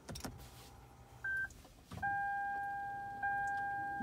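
Clicks of the push-button start on a Toyota Camry Hybrid, then a short beep about a second in and, from about two seconds in, a steady electronic chime tone from the dashboard as the hybrid system powers on from a weak 12 V battery. There is no engine sound.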